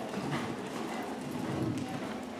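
Hoofbeats of a horse cantering on sand arena footing.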